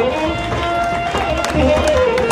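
Live traditional Ethiopian band music: a voice sings or chants over drums, with hand claps from the dancers.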